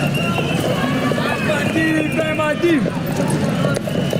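Horse hooves clattering on the paved street amid a crowd of protesters shouting and calling out over a steady crowd noise.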